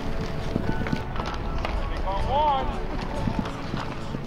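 Football practice drill: players' cleats running on turf and helmets and pads knocking in many short clicks, with one shouted call a little past two seconds in.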